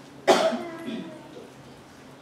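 A single loud cough about a third of a second in, trailing off over the next second.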